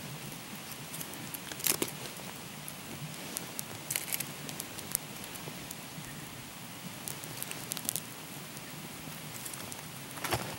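A small tinder fire of fluffed jute twine and lichen crackling, with scattered sharp pops in clusters, the loudest about two seconds in, over a steady hiss. Dry stalks rustle as they are laid onto the flames.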